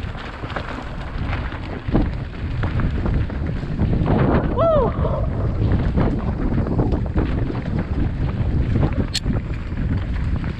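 Mountain bike descending rocky singletrack: wind buffets the helmet microphone over a steady low rumble, with rattling knocks from the tyres and bike over the stones. About halfway there is a short falling squeal, and near the end a single sharp click.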